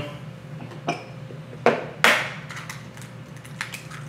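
A hen's egg being cracked into a plastic mixing bowl: a few sharp taps of shell, then a short crackle as the shell is broken open, about two seconds in.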